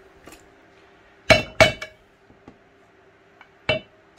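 Sharp metallic clinks of a flat-blade screwdriver against the neodymium magnets and steel rotor ring of a three-phase motor, as it is worked in behind the magnets to pry them off. Three quick clinks come a little over a second in, and one more near the end.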